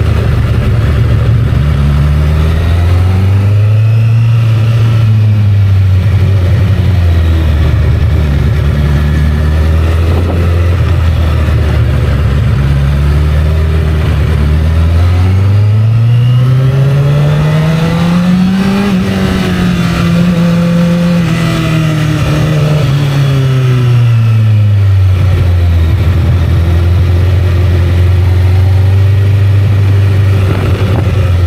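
Honda CBR1000RR's inline-four engine under way on the road. Its note rises and falls briefly a few seconds in, then climbs steadily to a peak about halfway through, holds, and falls away, running steady toward the end.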